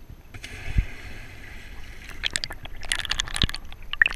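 Water heard through a camera held underwater: hissing bubbles and gurgling, then a cluster of sharp splashing crackles in the second half as the camera nears and breaks the surface. Two dull thumps are heard, about a second in and again near the end.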